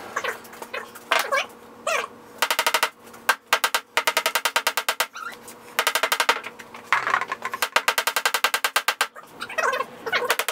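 Hammer tapping nail heads down into wooden cleats on MDF panels, in several quick runs of rapid light taps, with short pauses between runs.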